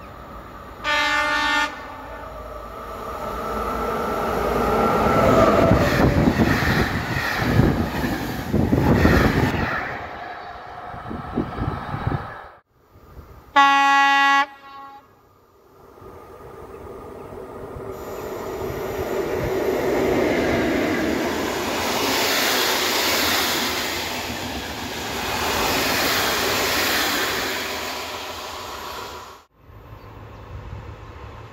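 Locomotive horn sounds a short chord about a second in, then a train runs past with rising and fading rolling noise from wheels and rails. After an abrupt break comes a second, louder horn blast, and then another long train pass.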